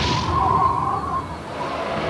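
A match struck and flaring with a short whoosh right at the start, over a steady high held tone that swells briefly just after.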